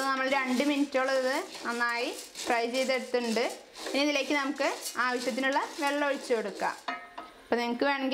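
Wooden spatula stirring sago pearls as they roast dry in a nonstick pan on medium heat, in regular scraping strokes about twice a second, each with a pitched squeak.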